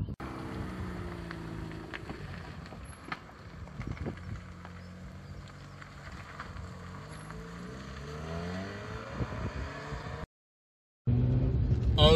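Mazda RX-8 R3's Renesis twin-rotor Wankel rotary engine heard from the roadside as the car pulls away and drives off, its note rising as it accelerates. Just after ten seconds the sound drops out briefly, then the rotary engine comes back much louder, heard from inside the cabin.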